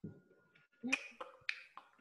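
A microphone on the call cuts in from silence and picks up a handful of sharp clicks and taps in the second half, with a faint steady hum under them.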